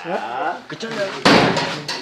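A man talking, then about a second and a quarter in a loud, noisy crash from a wooden door lasting under a second.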